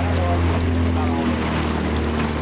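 Outboard motor of a small boat running at a steady speed, with wind and water rushing past the hull.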